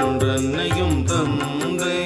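Devotional song: a voice singing a drawn-out, winding melodic line over a steady low drone, with a light, regular percussion beat.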